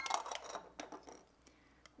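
A few faint clicks and taps of hollow plastic toy-ball halves being handled. They die away to near silence after about a second.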